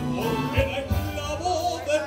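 Live ballad with a small orchestra: a male voice holding a wavering, vibrato-laden melody line over violins and piano, with a low bass note under a second apart.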